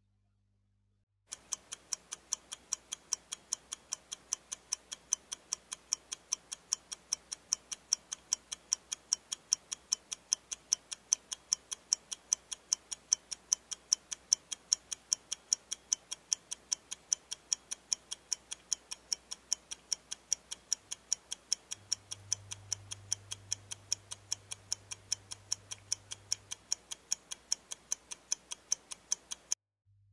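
Clock-ticking sound effect counting down a 30-second timed task: a steady, even tick, several a second, that starts about a second in and stops just before the end. A faint low hum joins for a few seconds near the end.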